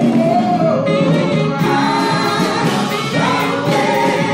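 Gospel music: a choir singing held notes over instrumental accompaniment.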